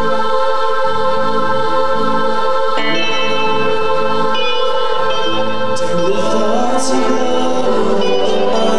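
Live rock band playing: a held chord of steady sustained tones that changes about three seconds in, moving bass notes underneath and electric guitar, with cymbals coming in near the end.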